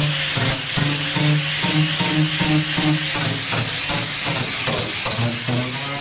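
Electric angle grinder with an abrasive disc roughing up the inside of a fiberglass canoe hull: a steady, loud grinding hiss of disc on fiberglass. Music with low notes plays underneath.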